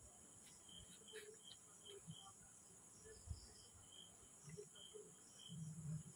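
Near silence with a faint, steady high-pitched chirring of crickets, a few faint ticks, and a soft thump about three seconds in.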